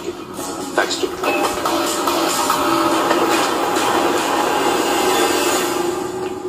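Film soundtrack: a dramatic background score that swells into a loud, rushing build over a held low note.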